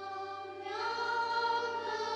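Choir singing long held notes; a fuller, higher chord comes in less than a second in and is held.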